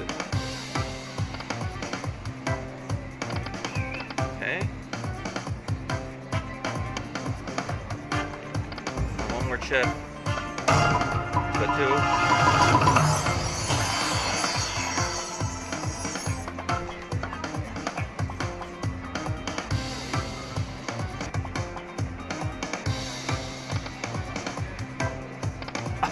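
Lightning Cash slot machine's free-game bonus music playing with a steady beat. About ten seconds in it swells into a louder, fuller passage of chimes for several seconds, then settles back to the beat.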